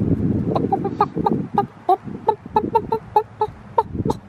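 Young white hens clucking in a rapid run of short calls, about four a second, starting about half a second in; their voices now sound like those of adult hens.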